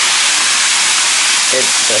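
Whole tilapia deep-frying in a wide pan of hot oil: a steady, loud sizzling hiss.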